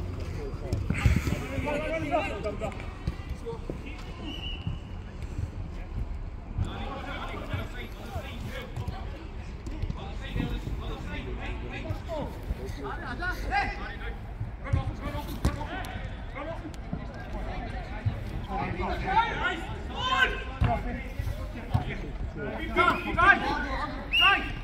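Five-a-side football in play on an artificial pitch: players shouting to each other now and then, more often near the end, with short thuds of the ball being kicked.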